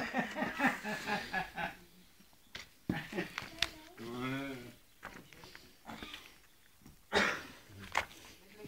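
Soft human laughter trailing off over the first second or two, then quiet, scattered voice sounds with a few light clicks.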